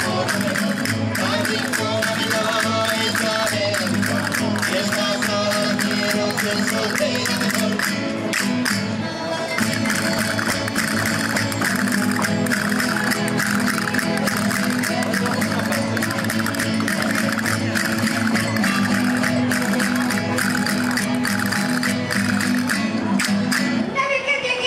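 Live Spanish folk music from a string band led by guitars, with a voice singing and a quick run of sharp clicks keeping the rhythm.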